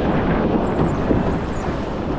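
Steady rumble of wind on the microphone over the wash of shallow surf foaming around a surf boat's hull.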